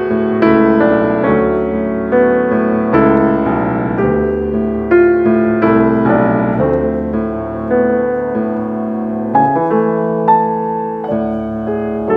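Steinway concert grand piano played solo: a slow classical piece, with held chords ringing under a melody line.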